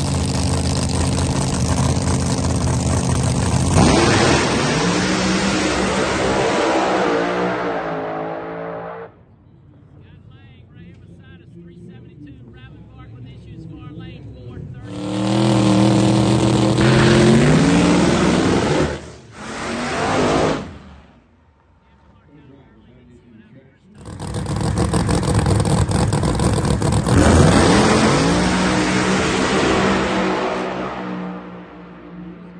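Pro Mod drag-racing car engines revving hard at the starting line in turns. Each run of revs climbs in pitch over a few seconds, then falls away. About 24 s in, both cars launch together and run down the track, their engines climbing in pitch.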